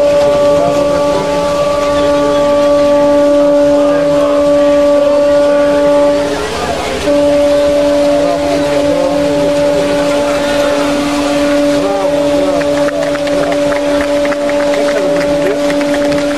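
Boat horn sounding a long, steady blast, the salute given as the cross is thrown into the sea at the Epiphany blessing of the waters. It is held for about six seconds, breaks off briefly, then sounds again until the end, over crowd noise and splashing water.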